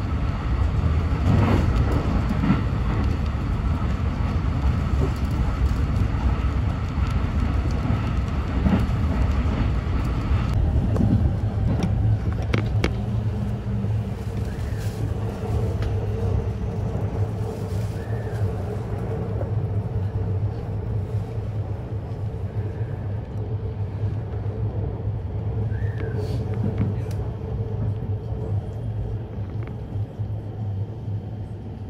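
Inside a JR Shinkaisoku electric train running on the line, with a steady low rumble of wheels on rail. About ten seconds in, a higher steady hum from the drive cuts off, and the rumble slowly eases as the train coasts and slows into a station.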